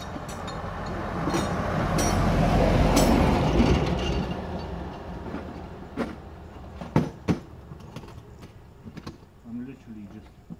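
A vehicle passing by on the road, its noise swelling to a peak about three seconds in and then fading away. A few sharp knocks and clicks follow.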